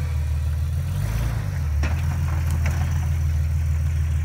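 Lifted Jeep Wrangler's engine running at a slow off-road crawl, a low steady rumble whose tone shifts briefly about a second in. A few faint knocks come near the middle.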